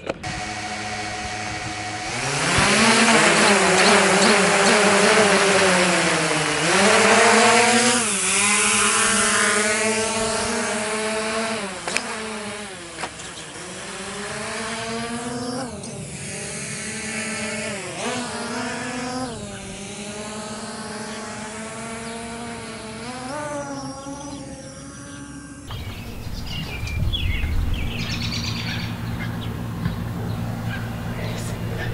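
Small quadcopter camera drone's propellers buzzing as it spins up and takes off, the pitch rising and falling again and again as the throttle changes. Near the end it gives way to quieter outdoor sound.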